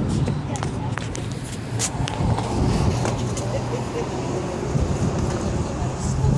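Indistinct chatter of people, with scattered clicks and knocks from a handheld phone's microphone being handled, most of them in the first two seconds.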